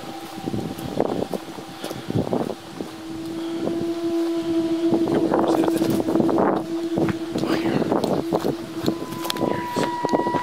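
A steady drone held on one low note, with fainter higher tones that shift in pitch and a new higher tone coming in near the end, over rustling handling noise and wind on the microphone.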